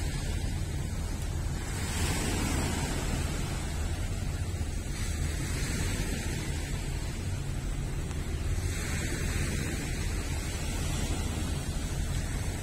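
Small sea waves washing onto a pebble and rock shore, the wash swelling and fading every few seconds. Wind buffets the microphone, adding a low rumble.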